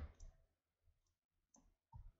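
Near silence with a few faint computer mouse clicks as several items are selected.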